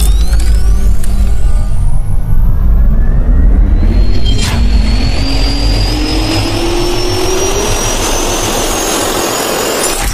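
Logo-intro sound effect of a jet turbine spinning up: a heavy rumble under a whine that rises steadily in pitch, with a sharp hit about four and a half seconds in.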